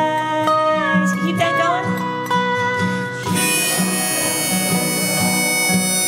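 Instrumental break of an acoustic folk duo: acoustic guitar strummed in a steady rhythm under a dobro sliding between notes, then a harmonica coming in about three seconds in with long held notes.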